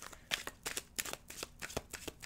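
A deck of tarot cards being shuffled by hand: a quick, irregular run of soft card clicks.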